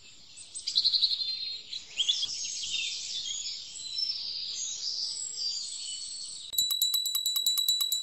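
Birds chirping and singing in a steady background of birdsong. About six and a half seconds in, the birdsong gives way to a bell ringing with a rapid, even rattle.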